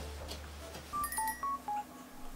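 An editing sound effect of four short electronic beeps at shifting pitches, like phone keypad tones, starting about a second in as the low background music fades out.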